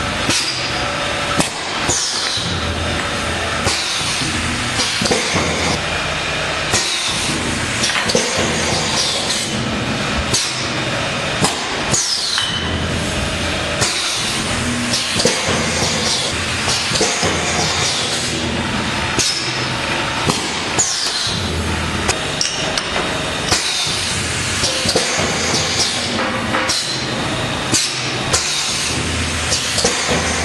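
Automatic cover filling machine running: a steady mechanical noise with frequent irregular metallic clanks and knocks as its parts cycle.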